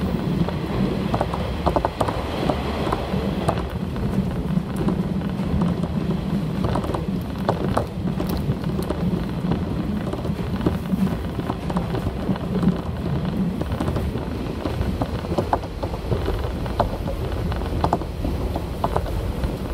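Inside a diesel railcar running at speed: a steady low rumble and drone of wheels on rail, with scattered clicks and knocks from the track.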